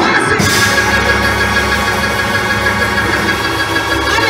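Live church band music led by sustained organ chords, opening with a loud hit at the start.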